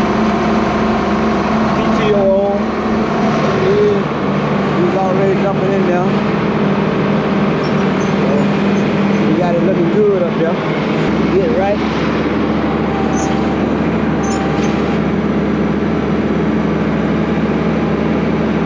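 Steady drone of a tractor's diesel engine held at working speed while it packs cotton in a module builder, with a person's voice rising and falling over it now and then.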